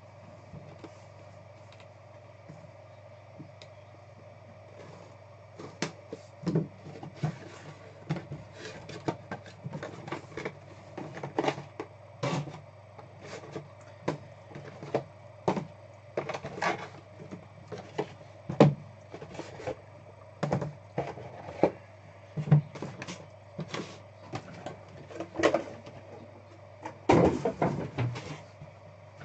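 Cardboard case of trading card boxes being opened and handled, the boxes lifted out and set down on a table: irregular knocks and scrapes that start about six seconds in, over a steady low hum.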